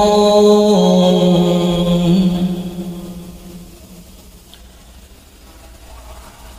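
A man's voice reciting the Qur'an in melodic chant, holding one long drawn-out note at the end of a phrase. The note steps down in pitch about a second in and fades away about three seconds in, leaving a quiet pause.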